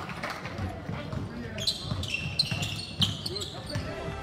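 A basketball bouncing on a sports hall floor during play: a run of sharp thuds from about a second and a half in, with short high sneaker squeaks among them. Voices carry in the hall.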